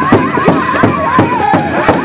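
Powwow drum group singing over a big drum: a steady drumbeat about three strokes a second under high, wavering voices in unison.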